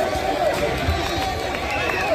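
A group of voices talking and calling out over one another, people celebrating a win.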